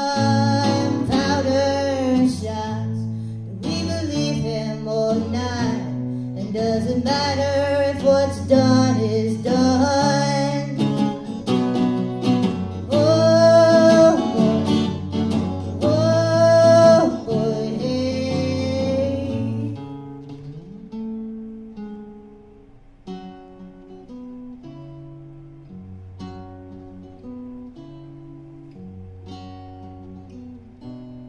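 A woman singing a song over plucked guitar in a live performance. About twenty seconds in the voice stops and the guitar carries on alone, more quietly.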